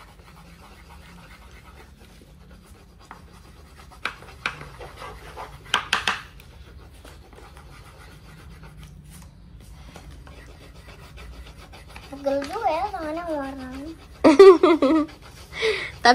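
Coloured pencils scratching faintly on paper, with a few louder scrapes about four to six seconds in. Near the end a child's voice comes in with a wavering pitch.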